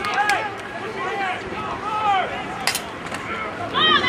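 Several voices shouting and calling out indistinctly from the stands and sidelines during a football play, with one sharp knock a little before three seconds in. The shouting swells again near the end.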